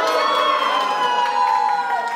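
A singer holding one long high note, drifting slowly lower in pitch, as a song ends, with a crowd cheering underneath.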